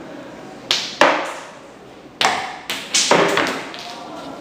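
A quick run of about five sharp swishing noises, each starting suddenly and fading within about half a second.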